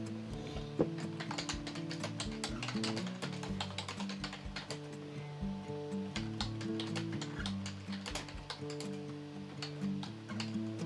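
Typing on a computer keyboard: irregular runs of quick key clicks, over quiet background music with held notes.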